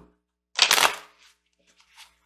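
A deck of tarot cards being shuffled: a short burst of card riffling about half a second in, then a few faint card flicks near the end.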